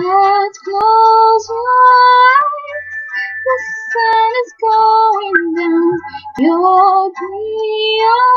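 A female voice singing long, wordless held notes that glide between pitches, over a backing track with a soft, steady low beat.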